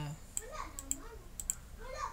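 About four sharp computer clicks spread over two seconds, two of them close together near the end, with a soft voice faintly underneath.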